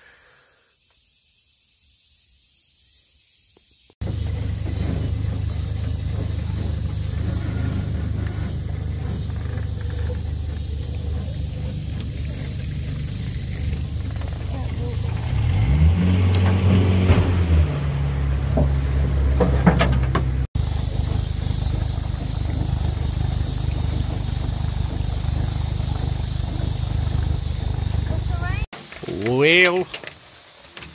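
Outboard jet motor on a jon boat running at low idle speed, a steady low hum; about sixteen seconds in its pitch briefly rises and falls as the throttle is touched, then settles. The first few seconds, before it comes in, are quiet.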